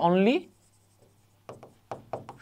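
A man's voice trails off, then after a short pause a stylus writes on an interactive whiteboard screen: a few short, light scratching strokes in the last half-second.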